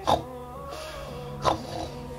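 A person imitating snoring for a sleeping doll: two short snorts about a second and a half apart.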